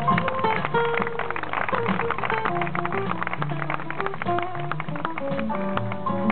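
Live jazz band playing an instrumental piece: guitar and upright bass notes over busy percussion, with horns in the ensemble.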